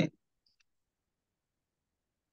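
The end of a man's spoken word, then near silence with one faint short click about half a second in.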